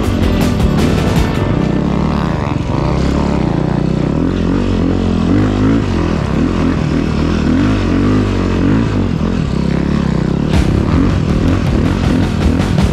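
Snow bike engine running under load, its pitch rising and falling as the throttle is worked on a trail through snow, with music over it.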